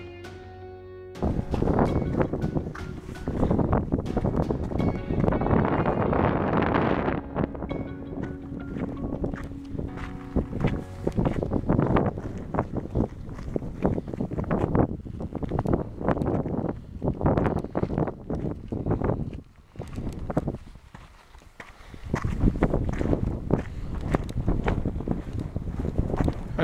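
Wind buffeting the microphone over walking footsteps on a sandy, stony path, the steps coming at an even walking pace with a quieter spell late on. A short bit of mallet-percussion music plays in the first second before the outdoor sound cuts in.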